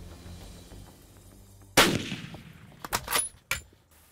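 A single shot from a Savage Alaskan Hunter bolt-action rifle about two seconds in, loud and sudden with a short ringing tail, followed about a second later by a few sharp clicks and knocks.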